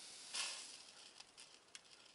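Failing flyback transformer (ТДКС) of a Sony CRT television sizzling and crackling as it breaks down internally under power: a faint steady hiss, a brief louder crackle about a third of a second in, then a few faint ticks.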